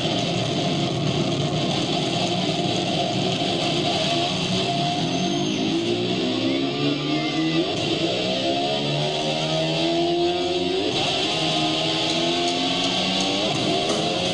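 Live rock band playing an instrumental passage led by electric guitar, with runs of distinct notes in the middle, recorded from the audience.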